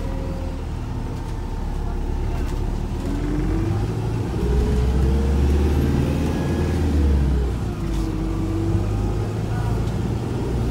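Volvo B5LH hybrid double-decker bus on the move, heard from inside. The drivetrain's whine climbs in pitch from about three seconds in, with a deeper rumble under it as the bus accelerates, then drops back near the end as it eases off.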